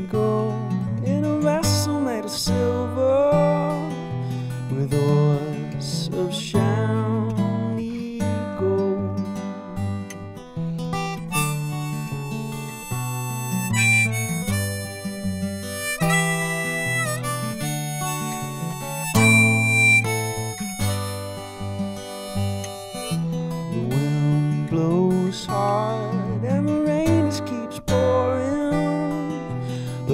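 Harmonica playing an instrumental break over a strummed acoustic guitar, with long held high notes through the middle.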